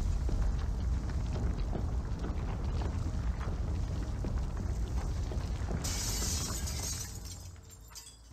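A synthetic sci-fi sound effect of deep rumbling with dense crackling. About six seconds in a bright burst of hiss comes up, then everything fades away near the end.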